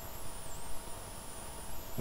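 Room tone between speech: a steady background hiss with a faint high-pitched whine that wavers in pitch.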